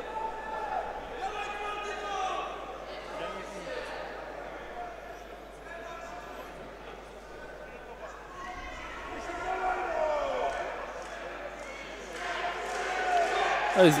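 Boxing crowd in a hall shouting and cheering, swelling louder near the end, with occasional dull thuds from the ring.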